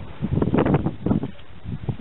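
Irregular rustling and handling noise, with scattered soft knocks, as hands move over the chainsaw's housing; the saw is not running.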